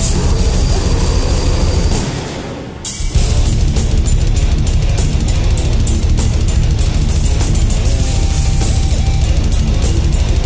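Heavy metal band playing live: distorted guitars, bass and drums at full volume. The music drops away briefly about two seconds in, then the whole band comes back in hard with fast drumming.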